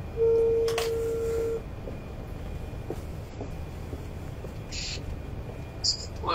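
Telephone ringback tone while a call connects: one steady beep about a second and a half long, followed by a wait on the open line with faint background noise.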